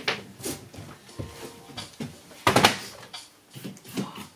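Scattered knocks and clatter from handling a sheet-steel ceiling panel, with a louder cluster of sharp knocks about two and a half seconds in.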